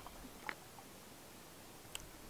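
Someone drinking from a metal mug: a faint gulp about half a second in and a small sharp click near the end.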